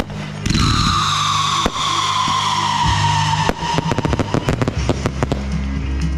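Fireworks: a whistle falling slowly in pitch for about three seconds, a single sharp bang during it, then a dense run of crackling pops.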